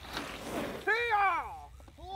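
A brief rush of noise, then a person's single drawn-out whoop about a second in that rises and falls in pitch.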